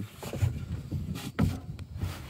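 Irregular low thumps and rustling: footsteps and handling noise from a hand-held camera carried around an aluminium boat, with one firmer knock a little after the middle.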